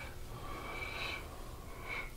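A person breathing hard: one drawn-out breath begins about a third of a second in and lasts nearly a second, and a second, shorter breath comes near the end.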